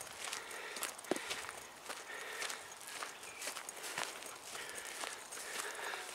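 Footsteps of a person walking on a grassy dirt path, soft steps at about two a second.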